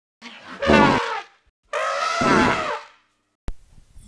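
A person's voice making two raspy, blaring noises in imitation of a badly played trumpet, the second one longer.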